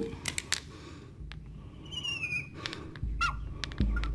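A marker squeaking on a glass lightboard as a line is drawn: one short, high, slightly falling squeak about halfway through and a brief second squeak later, with a few faint clicks before them.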